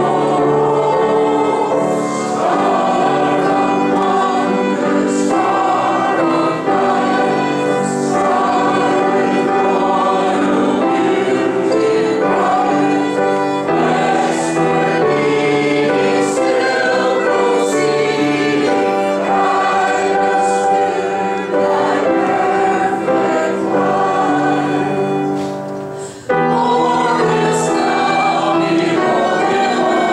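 Congregation singing a hymn together, accompanied by piano and violin, with a short pause between lines near the end.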